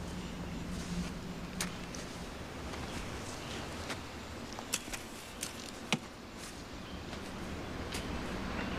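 Footsteps pushing through forest undergrowth, with several sharp cracks of brush or twigs, over a low steady hum that fades partway through.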